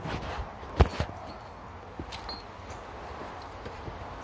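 A single sharp knock a little under a second in, followed by a couple of fainter clicks, over low outdoor background noise.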